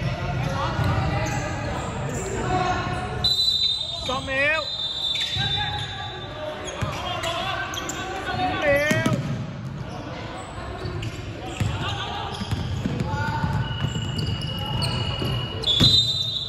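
Basketball game in a large gym: a ball bouncing on a hardwood court, sneakers giving short high squeaks, and players' voices echoing in the hall.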